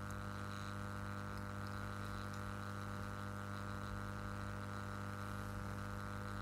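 Steady electrical mains hum with a buzzy stack of even overtones, unchanging throughout.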